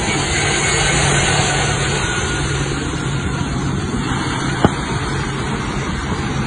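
Turbofan engines of a large military transport jet running at close range: a loud, steady rush with a low hum underneath. A single sharp click comes near the end.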